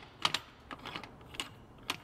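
A run of sharp mechanical clicks, about five in two seconds, unevenly spaced and some in quick pairs.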